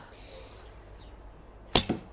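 A traditional bow shot with a thumb draw: about three-quarters of the way in the string is released with a sharp crack, followed at once by a second quick knock.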